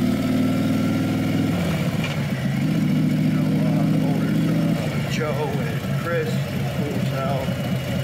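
Harley-Davidson Road Glide Special V-twin with a Bassani 2-into-1 exhaust running at low city speed. Its note eases off about one and a half seconds in, picks up again, then drops to a lower, uneven note about five seconds in.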